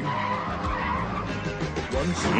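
Cartoon soundtrack: the song's music under a noisy vehicle sound effect as a junked car is snatched off a mound by a crane's electromagnet.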